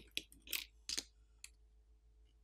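Blue plastic pry tool and fingers working the smartphone's main board loose from its frame: a handful of light, small clicks and scrapes within the first second and a half, then nearly quiet.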